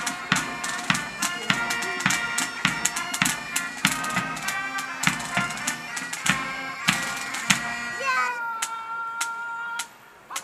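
Pipe band playing a march: bagpipe melody over steady drumbeats, then about two seconds from the end the tune settles into one long held note that cuts off abruptly.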